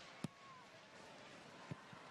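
Faint stadium crowd noise, with a sharp click about a quarter second in and a softer knock near the end.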